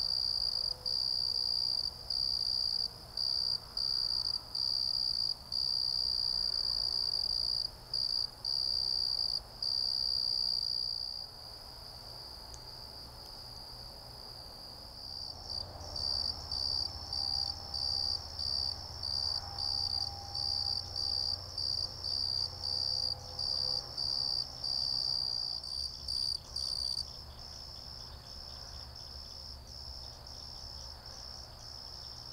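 A cricket trilling on one high pitch, with short breaks. It stops about eleven seconds in, then comes back as evenly spaced chirps about two a second before stopping again near the end.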